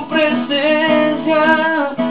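A man singing a worship song with acoustic guitar accompaniment, the sung notes bending and breaking between phrases.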